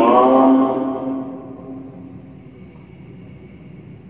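A man's voice holding one long drawn-out vowel at a steady pitch through a microphone and loudspeakers, loudest in the first second and fading away over about three seconds.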